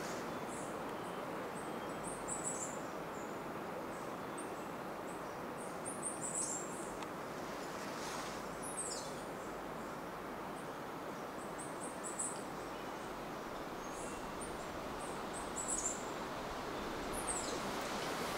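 Cloud-forest ambience: a steady background hiss with small birds giving scattered high-pitched chirps and short trills, a few of them falling in pitch.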